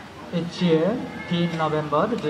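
A monk's voice through a microphone, speaking in short phrases with a sing-song rise and fall in pitch.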